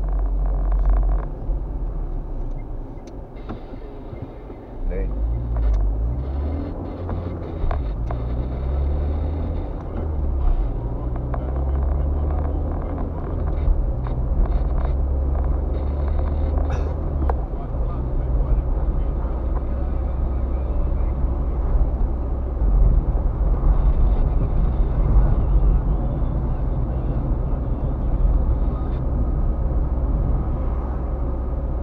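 Car engine and road noise heard from inside the cabin, with a steady low rumble. It eases off for a couple of seconds early on, then the engine note climbs in steps as the car accelerates through the gears.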